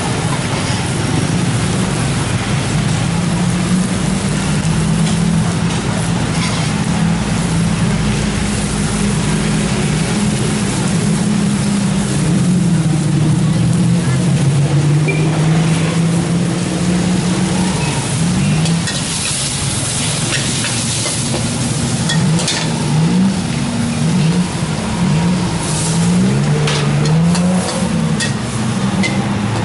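Shrimp and string beans frying in a wok, with a steel spatula scraping and knocking against the pan now and then, most often in the second half. Underneath runs a loud low drone that wavers in pitch.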